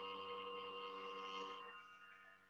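A faint, steady background hum made of several held tones, fading gradually toward the end.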